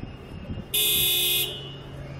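A car horn sounding once in a steady blast of under a second, starting about three quarters of a second in, over a low steady hum of street traffic.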